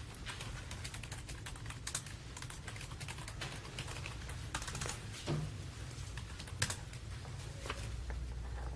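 Typing on a computer keyboard: quick, irregular key clicks, over a low steady room hum.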